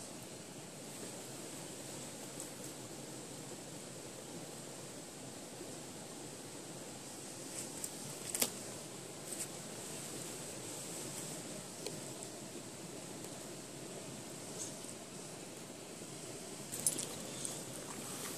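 Quiet outdoor background with a few light metallic jingles and clicks from a dog's collar tags, clustered about halfway through and again near the end.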